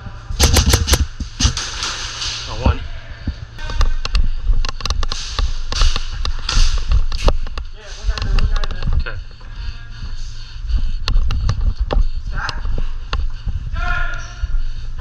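Airsoft gunfire: several bursts of rapid, sharp cracks from electric airsoft rifles, the first burst about half a second in.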